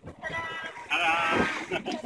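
A person's voice, fairly quiet, between louder stretches of singing.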